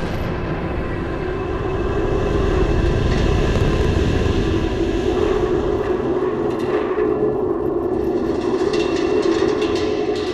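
Loud, steady rumbling roar with rattling, as of a rocket vehicle in flight through solid rocket booster separation. It cuts in abruptly and swells over the first few seconds.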